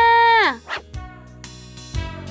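Cartoon sound effect for casting a fishing line: a loud held note that slides steeply down in pitch about half a second in, then a brief whoosh. Light background music with plucked guitar and bass follows.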